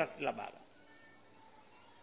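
A man's speech over a public-address microphone trails off about half a second in, followed by a pause of faint room tone.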